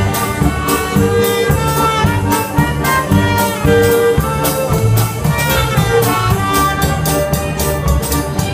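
Live band playing an instrumental passage with no vocals: brass horns carry held notes over bass and a steady drumbeat.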